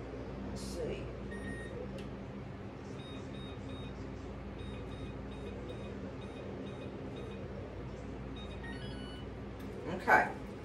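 Oven control panel beeping in a series of short high electronic tones as the oven temperature is set down to 350 degrees, over a steady low hum.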